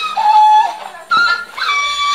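A Lisu wind instrument playing dance music: three held notes with short sliding steps between them.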